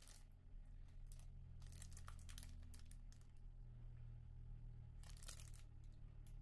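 Faint crinkling and rustling of product packaging being handled, in a few short spells, over a steady low room hum.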